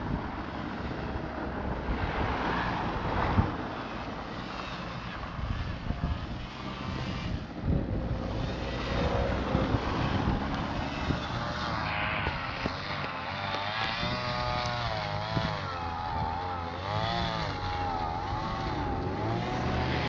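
Wind buffeting the microphone of a camera riding along on a moving bicycle, with rough road and rattle noise. From about halfway on, a wavering pitched sound rises and falls over it again and again.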